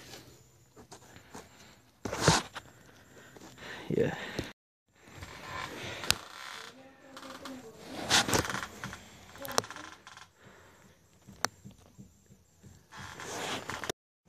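Scattered sharp knocks, clicks and scrapes of handling and movement, with a short dead break about a third of the way in.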